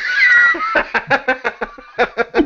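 A man laughing hard. It opens with a high, squealing whoop that slides in pitch, then breaks into a rapid run of short "ha-ha" pulses.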